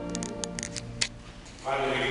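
A few short, sharp clicks and taps over a quiet church, then a priest's voice begins chanting about a second and a half in.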